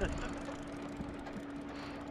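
Boat motor running steadily, a constant low hum under wind and water noise.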